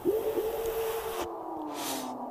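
Logo transition sound effect: a hissing whoosh over a held tone that dips briefly twice. The hiss cuts off about a second and a quarter in, leaving a low tone sliding slowly downward, with a short burst of hiss near the end.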